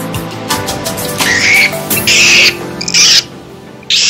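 Four loud, harsh bird calls, each under half a second, over background music.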